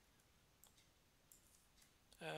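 Near silence broken by a few faint, sparse computer keyboard clicks while code is edited.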